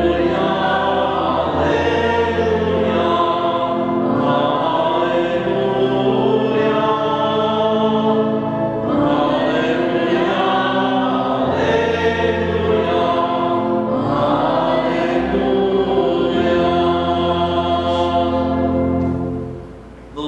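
Choir singing church music in long held notes, fading out near the end.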